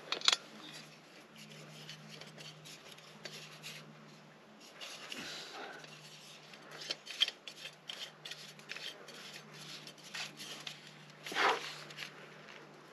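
Quiet clicks and scrapes of metal and plastic as a Jetboil Flash burner is fitted and twisted onto a gas canister, with a few sharper ticks about seven seconds in.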